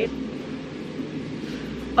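Steady low background rumble with no clear events in it. About one and a half seconds in, the background changes and a low, steady hum starts, as where one recording is spliced onto another.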